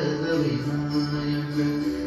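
Devotional Ganesh song playing for a dance, with a chanted note held steadily over the music that breaks off near the end.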